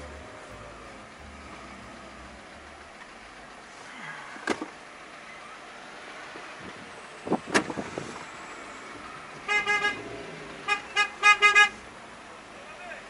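A car horn honking in two bursts of short, rapid toots near the end, the second burst the loudest, over steady traffic noise from a queue of cars. Two brief sharp sounds come earlier, about four and a half and seven and a half seconds in.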